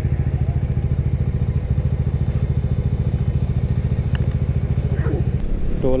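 Motorcycle engine idling with an even, rapid pulse. The engine sound changes abruptly near the end.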